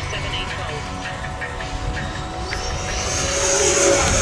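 Electric ducted-fan jet with an 8S 1500kv motor, its high fan whine and rushing hiss growing louder from about halfway through as the jet comes overhead. The low rumble of wind on the microphone runs underneath.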